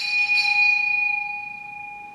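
A small bell is struck, with a second lighter stroke just after. Its clear tone rings on and slowly fades.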